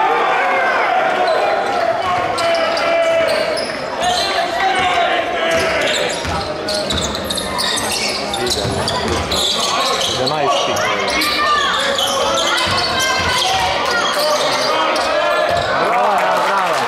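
Basketball game sounds in a gymnasium: the ball bouncing on the wooden floor with scattered sharp knocks, under a constant murmur of voices from players and spectators echoing around the hall.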